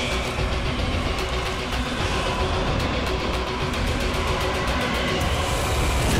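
Dramatic background score laid over a continuous low rumbling, noisy sound effect, steady in level with no pauses.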